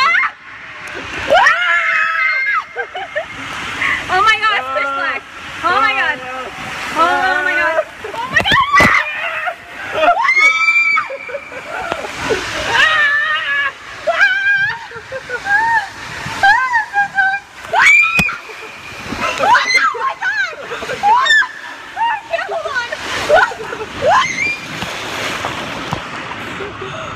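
Riders screaming and shrieking in repeated high-pitched outbursts over the rush and splash of water as a raft slides down a water-park slide.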